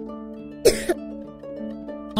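Soft background music of plucked-string notes, with one short swish of a broom stroke on a tiled floor a little after half a second in.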